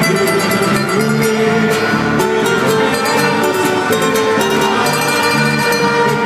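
Live band playing Colombian popular (despecho) music through a concert sound system, loud and steady with a regular beat.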